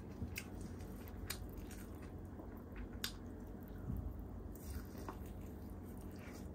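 Eating with the fingers: wet squishing as tandoori chicken and biryani are pulled apart by hand, then biting and chewing, with a few short sharp wet clicks scattered through.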